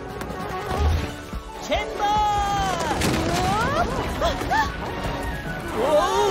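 Cartoon sound effects: a clatter of toy blocks crashing down, with a low thud about a second in, then high, swooping glides up and down in pitch over background music.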